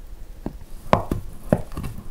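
Chef's knife slicing through a soft boiled potato onto a wooden cutting board: a few sharp knocks of the blade on the board, about half a second apart, the loudest about a second in.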